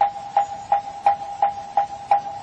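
Moktak (Korean Buddhist wooden fish) struck at a steady pace, about three hollow knocks a second, keeping time between lines of sutra chanting.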